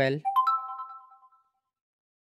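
Smartphone notification chime for an incoming WhatsApp message: three quick tones rising in pitch, ringing out over about a second.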